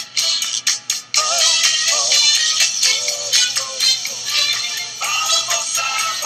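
Music with a steady beat and a singing voice that comes in about a second in.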